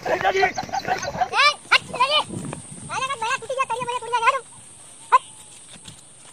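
Several men's voices talking over each other, then from about a second in a run of drawn-out cries that rise and fall in pitch, in several groups, with one short cry near the end.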